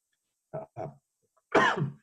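A man coughs once, loudly and briefly, near the end, after two faint short sounds from his throat.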